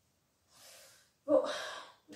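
A woman's soft, breathy sigh about half a second in, followed by the muttered word "boh" spoken on an out-breath.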